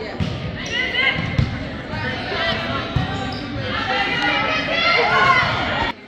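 A volleyball being struck in a gym, three sharp thumps about a second apart early in the clip, with raised, excited voices from players and crowd growing louder toward the end.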